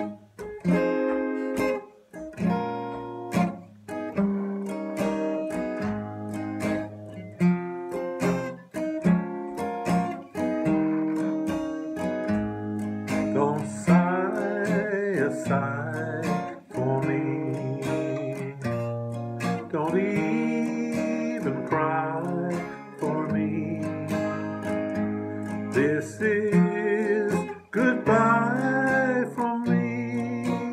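Steel-string acoustic guitar with a capo playing a slow song accompaniment, chords picked and strummed in a steady rhythm. A man's singing voice comes in partway through and carries the melody over the guitar.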